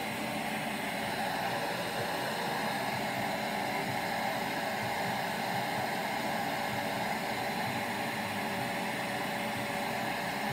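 Bissell 2-in-1 stick vacuum running: a steady motor hum under an even hiss of air, unchanging throughout.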